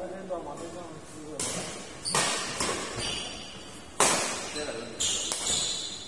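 Badminton rally: several sharp racket strikes on a shuttlecock a second or so apart, the loudest about two and four seconds in.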